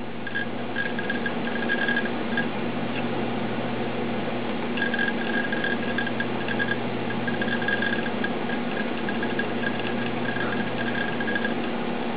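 Small laptop hard disk working through a software install: runs of a high-pitched whirring that come and go over a steady low hum.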